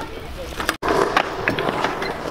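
Wheels rolling on concrete skatepark ramps, with sharp clicks and knocks from the riding. The sound cuts out for an instant a little under a second in, and the rolling is louder after it.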